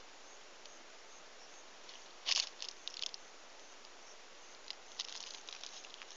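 A steady faint hiss with a few short rustles and scrapes: the loudest about two seconds in, a couple more around three seconds, and a quick run of small ones near the end.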